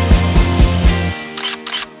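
Background music with a steady low beat, about four beats a second, that cuts off a little over a second in, followed by two short clicks.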